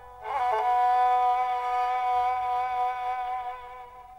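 Politiki lyra (bowed Constantinopolitan lyra) playing a quick ornament, then one long held note that slowly fades near the end, in a slow lament melody.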